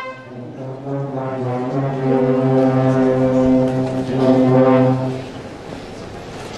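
Marching wind band of brass and clarinets playing a slow funeral march. Long held chords sit over a sustained low note, swell about four seconds in, and break off shortly after five seconds.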